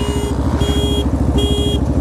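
Motorcycle engine idling steadily, with three short horn beeps about 0.7 s apart.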